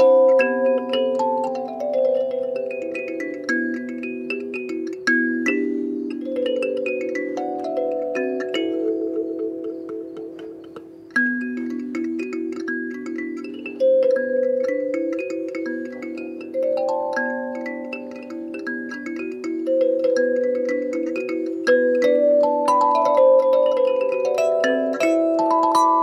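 Wooden box kalimba with metal tines plucked by the thumbs in a solo improvisation: quick runs of overlapping, ringing notes that let each note sustain into the next. About ten seconds in the playing thins out and fades, then picks up again with a strong new note and carries on in dense runs.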